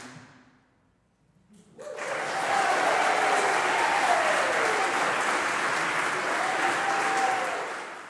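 The final chord of an a cappella choir dies away, and after a brief silence the audience bursts into applause, with a few voices cheering through it. The applause fades out near the end.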